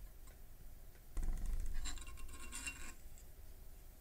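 Handling noise of soldering tools on a desk: scraping and light clinking as the iron and solder spool are put down and the LED board is picked up. It starts about a second in and lasts about two seconds.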